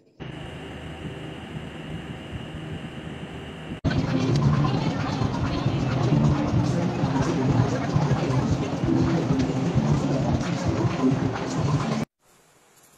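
Steady background noise with a thin high whine, then a sudden cut about four seconds in to louder, busy background crowd chatter mixed with music.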